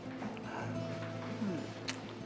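Soft background score with low notes held steadily under the scene.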